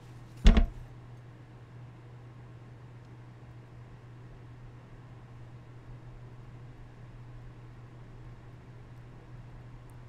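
A single sharp knock about half a second in, then only a steady low hum.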